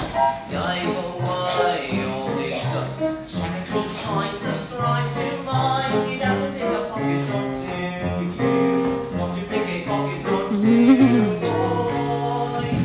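Live musical-theatre number: voices singing over instrumental accompaniment.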